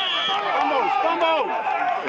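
Several men's voices shouting and calling over one another at once, with no single clear speaker.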